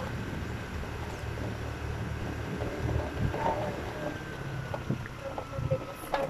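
Wind rushing over the microphone with the low, steady running of a small motorcycle's engine while riding along.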